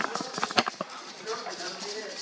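Clicks and knocks of a camera being handled and fitted onto a tripod, thickest in the first second and then fading to light handling noise.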